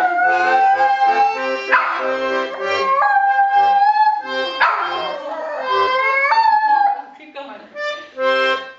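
A small white dog howling along to an accordion: a string of long howls, each sliding up in pitch and then held, over the accordion's chords and bass notes. The howling and playing fall away about a second before the end.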